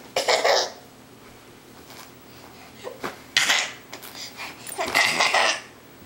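A toddler's breathy belly laughs in three short bursts: one just after the start, one about three seconds in, and a longer one about five seconds in.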